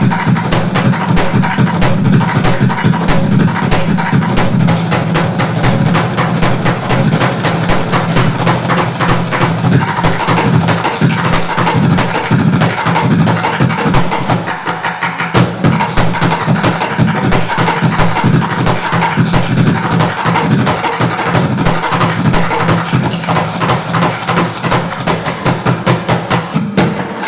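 Bucket drumming: drumsticks beat fast, dense rhythms on a set of plastic buckets, with deep low booms from the bucket bodies under sharp rapid hits. It goes briefly lighter about halfway through.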